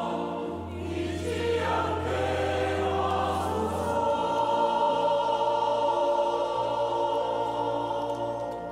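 Mixed church choir of men and women singing a Korean hymn in four-part harmony, holding long chords. A low steady bass tone under the first half stops about halfway through.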